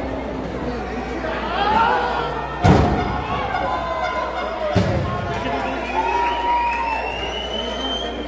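Two heavy thuds on a wrestling ring's canvas, about two seconds apart, the first the louder, as a wrestler is struck and hits the mat. Spectators shout and call out around them.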